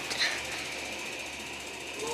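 Faint, steady rustling handling noise from a phone held close against the face and hand, with a brief soft hiss just after the start.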